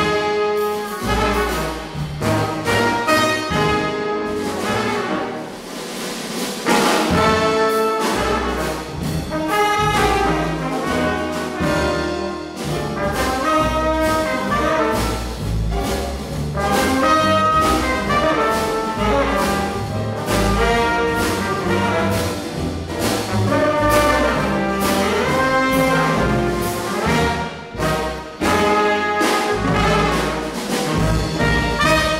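Live hard-bop jazz sextet: saxophone, trumpet and trombone playing the melody together over upright bass, piano and drums.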